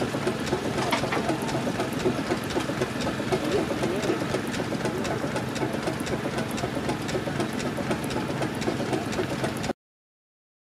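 Burrell Gold Medal steam tractor's engine running steadily at tick-over, with a continuous light mechanical clatter. The sound cuts off suddenly near the end.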